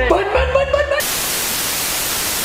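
A voice over background music for about a second, then a sudden, steady static hiss, a white-noise transition effect, cuts in and holds to the end.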